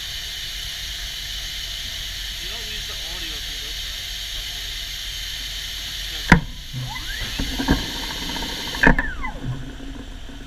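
Steady hiss of compressed air in a tube-handling machine's pneumatics, then two sharp clunks about six and nine seconds in. After each clunk part of the hiss cuts off, as pneumatic valves and actuators switch.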